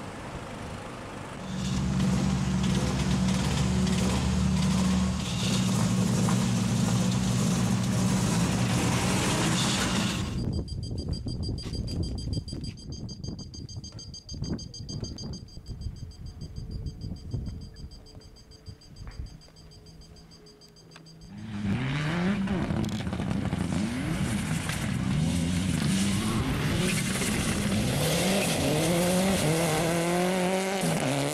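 An engine runs steadily at idle for several seconds, followed by a quieter stretch with a thin, high steady whine. From about two-thirds of the way in, a Mitsubishi Lancer Evolution rally car approaches at speed, its turbocharged four-cylinder revving up and down repeatedly through gear changes.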